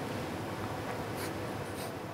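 Steady low hiss of room tone, with two faint brief scratchy rustles, one about a second in and one near the end.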